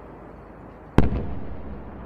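A single explosion: a sharp blast about a second in, followed by a rumbling tail that dies away over about a second. It comes just after a 'Tzeva Adom' rocket alert, which marks incoming rocket fire.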